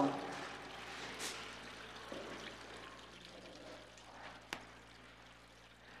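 Faint running water trickling and pouring into a bath, fading slowly, with a single sharp click about four and a half seconds in.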